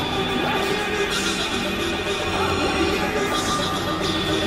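Experimental electronic noise music: layered synthesizer drones holding steady pitches under a dense, noisy wash, with no clear beat.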